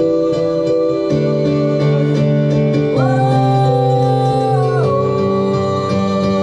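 Electronic keyboard playing sustained chords that change every second or so, while a male singer holds one long note from about three seconds in for nearly two seconds.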